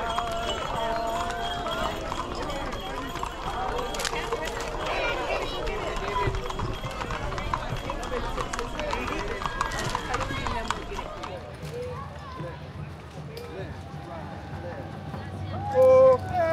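Indistinct chatter of several people along a street, with a few sharp clops of horses' hooves on asphalt. The chatter thins out after about eleven seconds.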